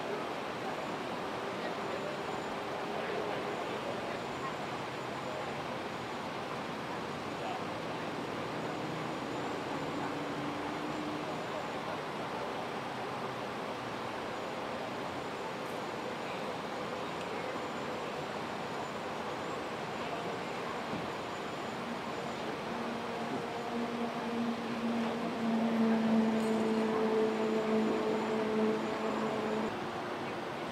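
Steady outdoor street noise with a motor vehicle's engine running. The engine hum grows louder from about two-thirds of the way in, holding a steady pitch, then cuts off just before the end.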